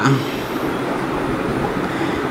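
Steady, even background noise, a constant hiss with no distinct events.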